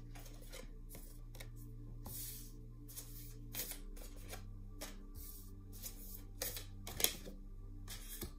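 A deck of oracle cards shuffled by hand: repeated soft slaps and riffles of cards, with a sharper snap about seven seconds in.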